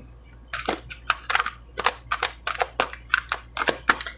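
A deck of oracle cards being shuffled by hand: an irregular run of quick, short card flicks and clicks starting about half a second in.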